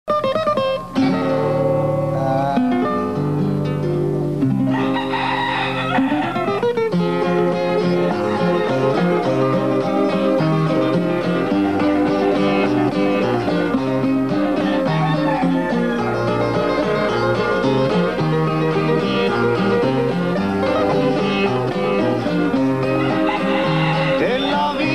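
Instrumental introduction of a bolero played on plucked guitars, a melody over a moving bass line, with no singing yet.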